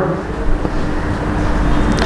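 Steady low background rumble with a faint hum, picked up by the pulpit microphone during a pause in speech.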